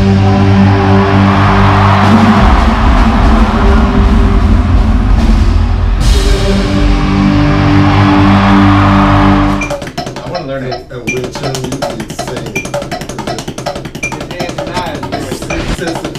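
A rock band playing loud through an arena PA, with electric guitar, bass and drum kit. About ten seconds in it cuts off abruptly and gives way to a drum kit played alone in a small room, quieter, with rapid sharp hits.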